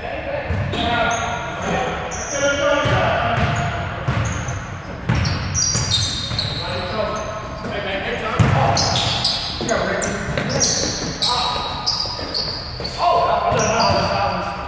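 Basketball bouncing on a hardwood gym floor amid sneakers squeaking, echoing in a large indoor hall, with players' voices calling out.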